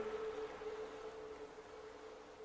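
Closing music fading out: a single held, ringing note dies away into faint hiss.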